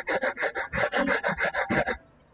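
A pen or stylus scribbling rapidly back and forth on a drawing tablet, about seven rubbing strokes a second, as a thick highlight mark is drawn.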